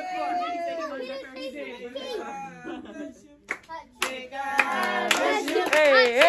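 A group of voices talking and laughing, with several sharp hand claps in the second half before the voices pick up loudly again.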